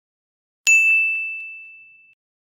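A single bright bell-like ding sound effect about two-thirds of a second in, ringing out and fading over about a second and a half, with a couple of faint quick repeats just after the strike.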